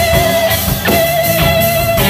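Live band playing an instrumental passage on two electric guitars over a drum kit, with a steady beat.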